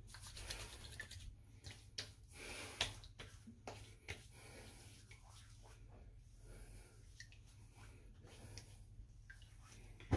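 Faint sounds of aftershave being put on by hand: a few soft clicks and taps and a brief rubbing in the first three seconds, then hands patting the face, over a low steady room hum.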